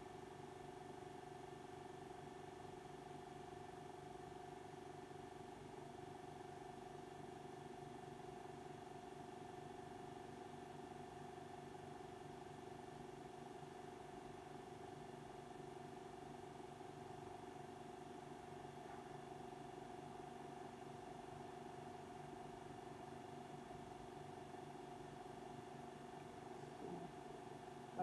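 A steady, quiet machine hum made of several constant tones that does not change at all.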